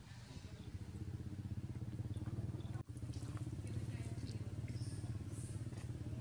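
Low, steady rumble of a small engine running, with a quick pulsing in it, broken for an instant about three seconds in.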